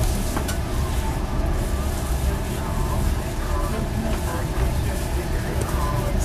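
Steady low rumble of a moving passenger train heard inside its compartment, with faint sound from the compartment's wall radio speaker as its volume knob is turned.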